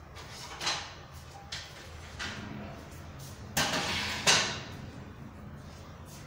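Cleaning supplies (a plastic bucket, sponge and bottle) being picked up and set down on a wooden table: a few separate knocks, then a longer, louder clatter about three and a half to four and a half seconds in.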